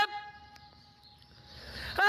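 The drawn-out last note of a man's sung-out street-vendor call, 'Buongiorno pescheria!', ends just after the start. Then comes a faint steady tone over quiet background noise that slowly grows louder toward the end.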